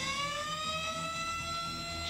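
Outdoor tornado warning siren winding up: one wailing tone that rises in pitch and then levels off and holds steady, heard through a television's speaker.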